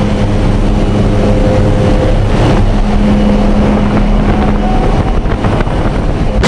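Steady loud drone of the jump plane's engine and propeller, mixed with wind rushing in through the open jump door.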